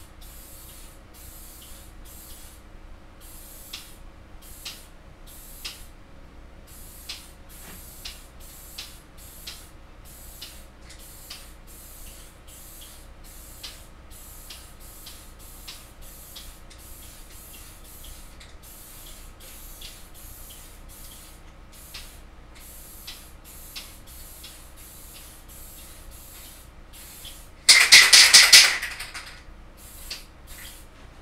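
Aerosol spray can hissing in short puffs, about one and a half a second, then a much louder burst lasting about a second near the end.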